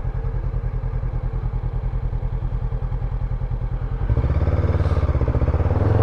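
Honda NX500's 471 cc parallel-twin engine idling with a steady low pulse, then about four seconds in it gets louder as the bike pulls away.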